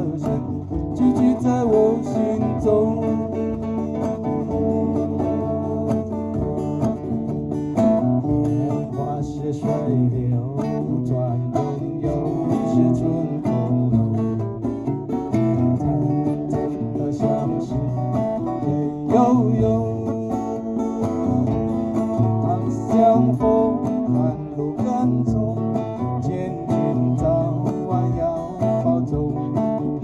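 Two acoustic guitars strumming and picking a slow folk tune, with a djembe hand drum keeping the beat, in an instrumental passage without vocals.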